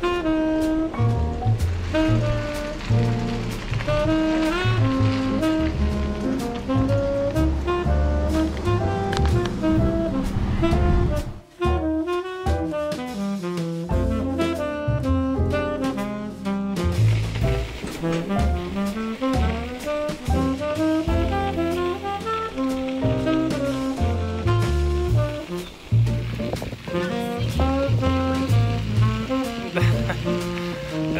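Background music: an instrumental tune with a stepped melody over a bass line, briefly dropping out about a third of the way through.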